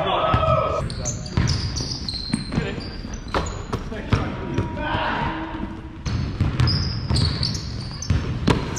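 Basketball bouncing on a hardwood gym floor during play, an irregular series of thuds, with players' voices ringing in the large gym.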